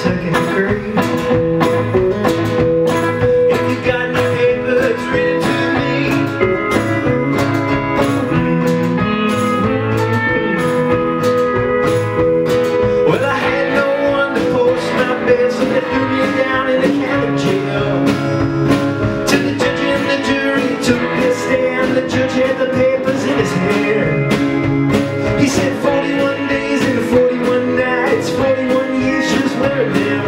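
Live folk band playing an instrumental break with a steady beat: electric and acoustic guitars, pedal steel guitar and drums.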